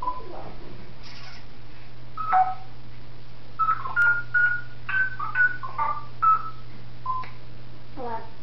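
African grey parrot mimicking telephone keypad beeps: a string of about ten short beeping tones at differing pitches, starting about two seconds in.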